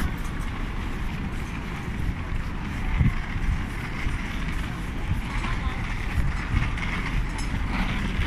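Busy city street ambience heard while walking: a steady low rumble of traffic and wind on the microphone, with indistinct voices of passers-by, and a brief low thump about three seconds in.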